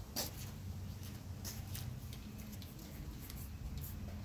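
A few soft footsteps of slide sandals scuffing and tapping on a concrete driveway, heard as scattered light clicks over a faint steady low hum.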